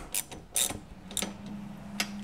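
Ratchet wrench clicking in short, irregular strokes as it tightens the nut on a garage-door track bracket. A low steady hum comes in about halfway through.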